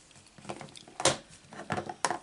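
Light taps and clicks from craft supplies being handled on a desktop craft mat, the sharpest tap about a second in, with smaller ones around it.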